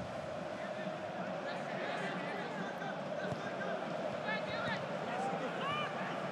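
Pitch-side sound of a professional football match in a near-empty stadium: steady background noise with players shouting to each other, more often near the end, and a ball kick or two.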